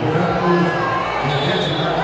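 Indistinct voices carrying through a large, echoing sports hall over a steady background hum of the crowd.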